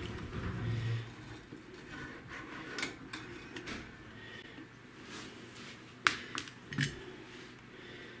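Metal parts of a CNC plasma cutter's torch mount being handled and taken off: scattered light clicks and knocks, the sharpest about six seconds in.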